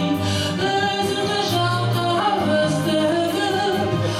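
A woman singing through a handheld microphone over an instrumental accompaniment with a steady bass line, holding long notes that bend in pitch.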